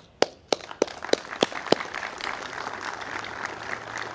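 Applause: a run of sharp single handclaps, about three a second, with a crowd's scattered clapping building beneath them and carrying on after the single claps stop.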